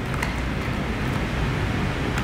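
Steady background hiss and low hum, with a few faint clicks as hands handle a white plastic hearing-aid case and its cardboard box.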